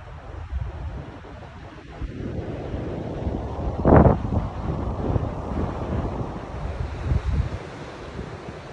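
Wind buffeting the microphone over the wash of surf on a pebble shore on a stormy day. The noise swells from about two seconds in, with one short, louder rush just before the middle.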